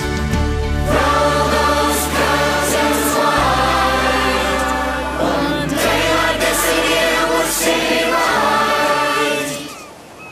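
Song with choir singing over a band backing, fading down sharply near the end.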